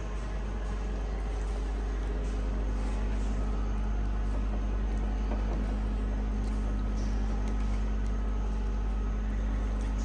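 A steady low hum under an even background noise, unchanging throughout.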